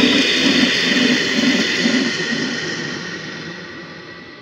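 Breakdown in a minimal techno mix with the beat dropped out: a reverberant wash of noise with a soft pulsing low tone fades away steadily.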